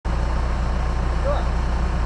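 Jeep engine idling steadily, heard through the hood, with a few short arched calls over it.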